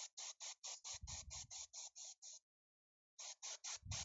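Airbrush spraying in quick short bursts, about five a second, with a break of under a second past the halfway mark. Twice there is a low rush of air.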